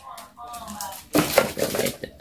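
Handling clatter of a pack of nail files being set aside on a tabletop, a quick run of knocks and rattles about a second in. A faint voice is heard at the start.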